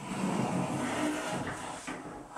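A bathroom door being pushed open, sliding or folding on its track with a steady rolling rumble that lasts about a second and a half and then fades.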